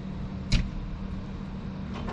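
A steady low hum with a constant noise over it, and one sharp knock about half a second in.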